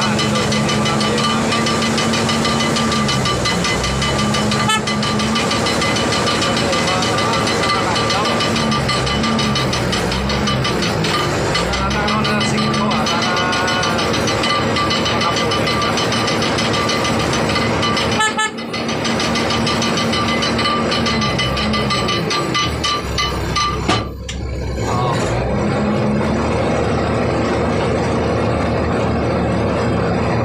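Ship's cargo crane running as it hoists and swings a sling load of tyres: a steady machine drone whose low note repeatedly drops and rises again as the crane is worked, under a constant high whine. The sound dips briefly twice in the second half.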